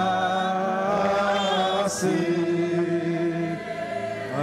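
Congregation singing a slow worship song in long held notes.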